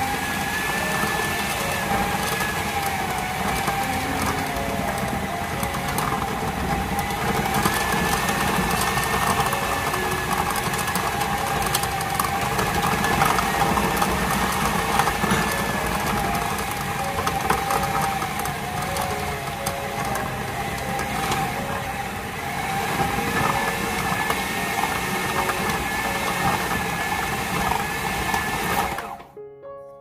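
Food processor motor running, its blade churning pastry dough of flour, butter and ice water until it comes together into a ball. The motor's whine wavers slightly, and the machine stops about a second before the end.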